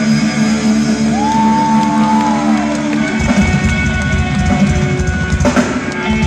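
Live rock band playing: an electric guitar holds a note that bends up and then slides slowly down over sustained chords, and about three seconds in the drums and bass come in heavily.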